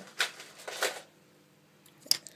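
Small plastic charms clattering together as they are handled in a pile: two short rattles within the first second.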